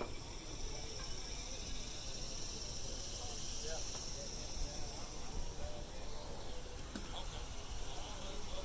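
Steady high-pitched buzzing of insects, fading out after about six seconds, over faint distant chatter.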